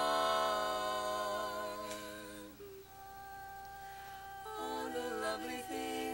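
Women's barbershop quartet singing a cappella in close harmony, holding a chord that stops about two and a half seconds in. A single steady note then sounds alone before the four voices come in together on a new chord.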